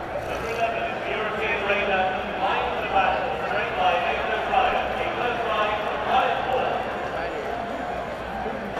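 Indistinct chatter of many voices from a racetrack crowd, with horses' hooves walking on the dirt track.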